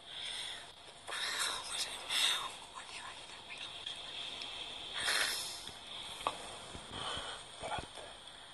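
Two people whispering in short breathy bursts, with pauses between, over a steady faint hiss.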